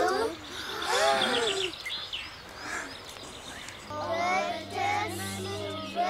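Children's voices talking and exclaiming, with birds chirping in the background. About two-thirds of the way in, a low steady musical note comes in under the voices.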